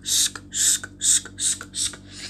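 A person making rhythmic breathy, hissing mouth sounds, about two bursts a second.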